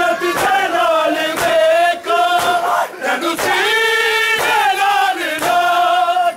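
Crowd of men chanting a noha, a Shia mourning lament, in unison and loud. Sharp slaps of hands beating chests (matam) cut through it at uneven intervals, roughly once a second.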